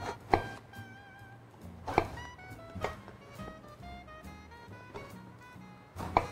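A chef's knife chops through an eggplant onto a wooden cutting board: three sharp strokes in the first three seconds. Light jazzy background music plays under them.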